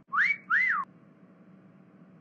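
A two-note wolf whistle: a quick rising note, then one that rises and falls, both within the first second.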